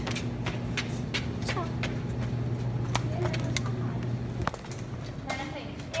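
Plastic strip-curtain flaps rustling and knocking together as they are pushed aside, in irregular clicks, over a steady low hum.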